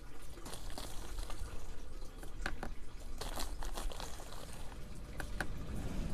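Plastic fertilizer bag crinkling as it is handled, with irregular scrapes and clicks of a spoon scooping granules out of it.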